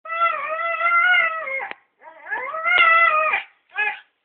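A dog giving three drawn-out, howling whines: a long one, then one that rises in pitch, then a short one near the end. The dog is asking for a ball.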